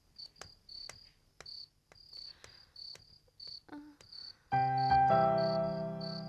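Crickets chirping in short, regular bursts about twice a second. About four and a half seconds in, a held keyboard chord of background music comes in over them and slowly fades.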